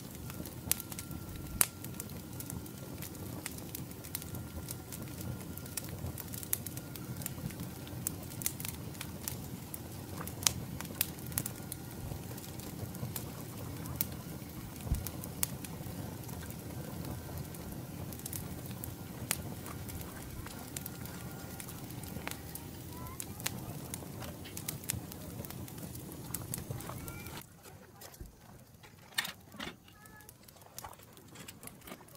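Wood-ember campfire under a rotisserie crackling, with many sharp pops over a steady low rumble. The fire sound stops abruptly near the end, leaving quieter outdoor background with a few clicks.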